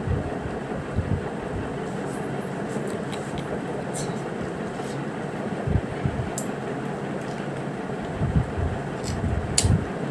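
A room cooling fan running with a steady whoosh, with a few light clicks and soft bumps, most of them near the end.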